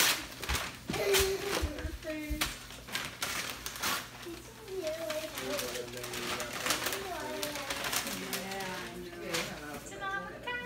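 Wrapping paper rustling and crinkling as a present is unwrapped, in quick sharp rustles over the first few seconds. In the second half a voice hums or murmurs without words.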